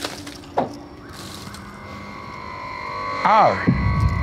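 Background film score: soft low thumps about every second and a bit, then sustained chords swelling and growing louder. A voice comes in loudly near the end.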